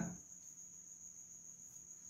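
Faint, steady high-pitched whine with a faint low hum beneath it, unchanging throughout.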